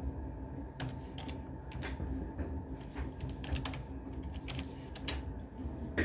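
Typing on a computer keyboard: irregular keystrokes in short runs, with pauses between them.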